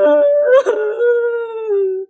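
A man crying out loud in a drawn-out wail; the second half is one long held note that slowly sinks in pitch.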